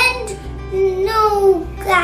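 A sing-song voice that rises at the start, is held on one note for about a second, then falls away, with a short rise again near the end, over quiet background music.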